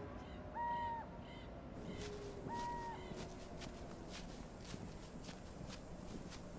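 Two identical short bird calls, each a steady single note, about two seconds apart, over faint outdoor ambience. From about four seconds in comes a run of light, evenly spaced footsteps.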